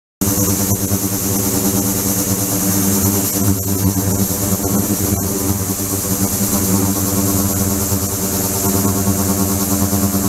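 Water-filled ultrasonic tank running: a steady hiss with a constant hum made of several steady low tones. The sound starts abruptly just after the beginning.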